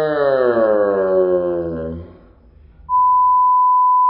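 A woman's voice holding one long whining cry for about two seconds, its pitch gliding slowly down. Then, about three seconds in, a steady high beep: the test tone of a colour-bars screen.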